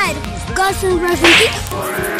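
A short whip-like swish sound effect about a second and a half in, over background music.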